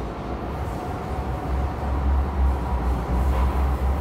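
Hong Kong MTR subway train heard from inside the carriage: a steady low rumble that grows louder about a second and a half in, with a faint steady whine above it.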